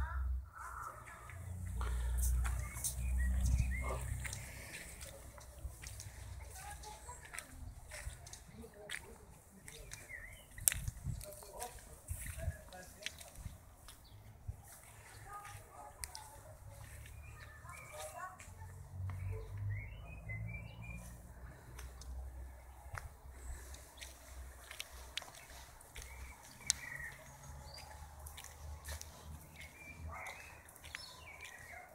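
Outdoor ambience: a low rumble of wind and handling on the camera microphone with scattered clicks, and a few faint bird chirps, clustered about twenty seconds in.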